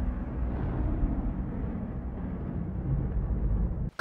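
A deep, dark cinematic rumble from the intro soundtrack, slowly fading with no clear melody. It cuts off suddenly just before the end.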